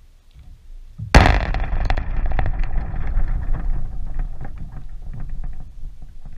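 A sudden loud crash close to the microphone about a second in, followed by several seconds of rattling and low rumbling that slowly die away.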